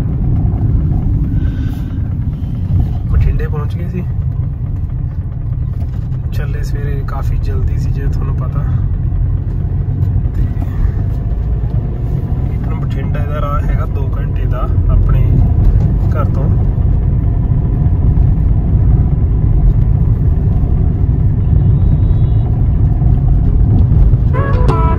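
Road and engine noise heard inside a moving car's cabin: a steady low rumble that grows a little louder a bit over halfway through.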